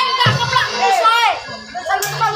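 Children shouting and squealing in high cries that slide up and down in pitch, over background music with a low bass line.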